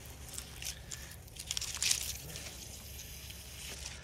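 Battery-powered two-gallon garden sprayer's wand hissing as it sprays liquid down into a palm's crown, with the fronds rustling. The hiss swells to its loudest a little under two seconds in.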